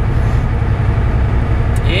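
Inside the cab of a Volvo 780 semi truck at highway speed: the Cummins ISX diesel engine and road noise make a steady, loud low rumble.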